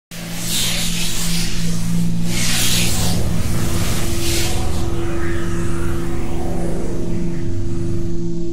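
Logo intro music: a low, steady held drone with three rushing whooshes in the first five seconds.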